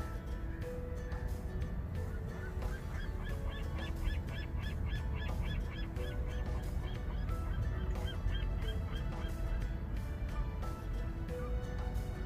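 A bird calling in a quick run of about a dozen short rising-and-falling notes, about four a second, starting a few seconds in, then a few more notes later. Soft background music plays underneath.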